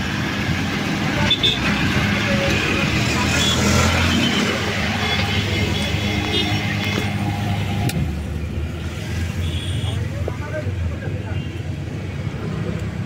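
Busy road traffic with a steady low engine hum.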